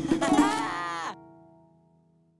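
Children's cartoon music with a moo-like vocal call whose pitch bends. Both cut off about a second in and fade to near silence.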